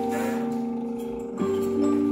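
Large antique disc music box playing a tune: the punched metal disc plucks the steel comb, giving bell-like notes that ring on and fade, with a new chord struck about a second and a half in.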